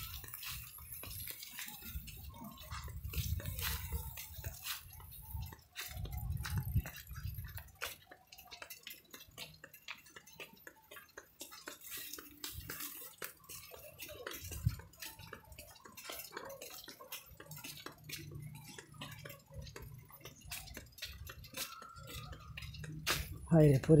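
Wind buffeting a handheld microphone in uneven low rumbling gusts, with many small scattered clicks and light rattles.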